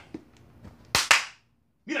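A sharp double crack from a hand strike, two quick smacks a split second apart, with a short ring of room echo after them.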